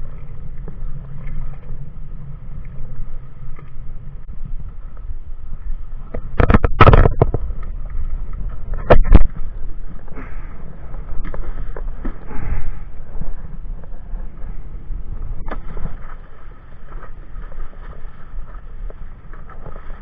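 Wind buffeting the microphone out on choppy open water, a steady rumble, with two loud bursts of noise about seven and nine seconds in.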